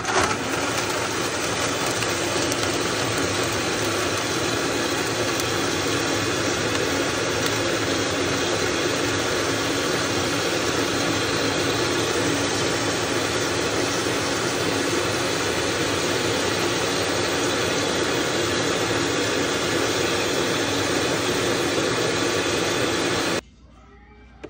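Vitamix blender motor running steadily at a constant pitch, blending dragon fruit, banana, nuts and dates with milk and water into a smoothie. It starts abruptly and is switched off near the end.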